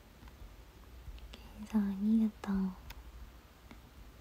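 Speech only: a young woman's voice, one short soft utterance in two parts about halfway through, otherwise a quiet room.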